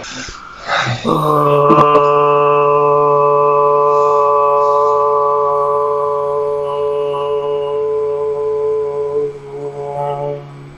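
A man's voice chanting a mantra as one long, low, steady note. It begins about a second in and is held for some eight seconds, followed by a few shorter notes near the end.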